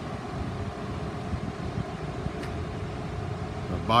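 Ford 6.7-liter Power Stroke V8 diesel engine of the bus idling, a steady low rumble.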